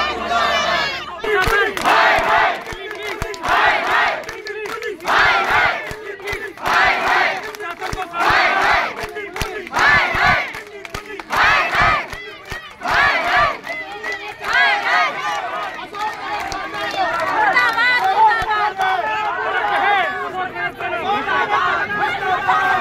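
A protest crowd shouting a slogan in unison: a rhythmic chant, two shouts at a time, repeated about every one and a half seconds. About two-thirds of the way through the chant breaks up into loud mixed shouting and chatter from many people.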